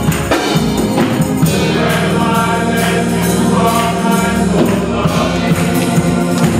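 A men's gospel choir singing, with hand clapping on the beat about twice a second.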